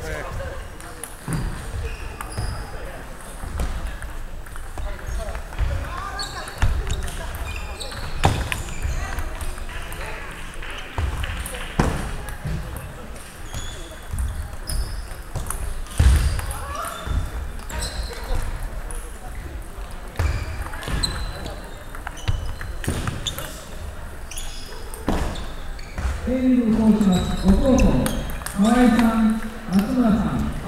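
Irregular sharp clicks of table tennis balls bouncing on tables and striking rackets, echoing in a sports hall, with duller knocks mixed in. Someone talks over the clicks near the end.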